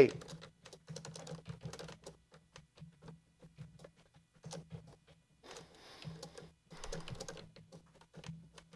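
Typing on a computer keyboard: quick, light key clicks in bursts, with a lull in the middle, over a faint steady low hum.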